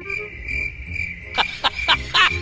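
Cricket chirping sound effect, a steady high trill, with three louder strokes about three-quarters of the way through; the stock 'crickets' gag marking a joke met with silence.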